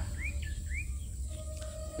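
A bird giving short, rising chirps, two in the first second, over a steady low rumble.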